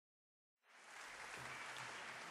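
Dead silence for the first half second or so, then a faint, even hiss fading in and holding steady.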